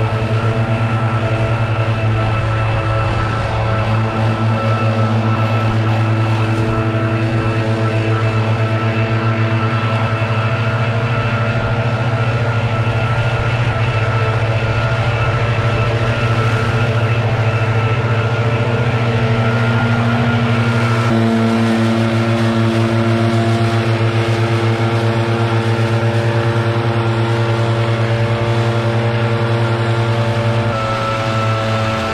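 Gas backpack leaf blowers running together at high throttle, a steady loud drone whose pitch shifts slightly a few seconds in and again about two-thirds of the way through as the engines change speed.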